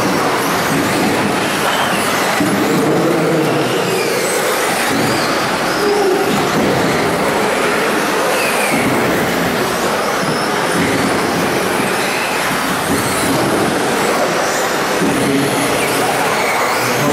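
Several 1/10-scale two-wheel-drive off-road RC buggies racing, their motors whining and rising and falling in pitch as they accelerate and brake, over a steady wash of tyre and hall noise.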